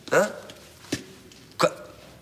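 A man's short questioning interjection, "¿Ah?", followed by a sharp click just under a second in and another brief vocal sound about a second and a half in.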